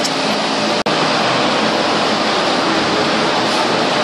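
Steady rushing background noise, cut off for an instant just under a second in.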